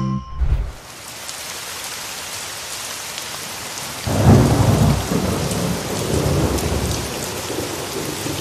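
Thunderstorm: steady heavy rain, with a loud rumble of thunder about four seconds in that rolls on and fades over the next few seconds.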